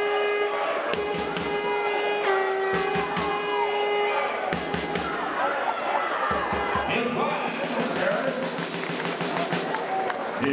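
Music with a regular drum beat and a long held note for the first four seconds or so. It gives way to many voices shouting and cheering at once as a football play runs.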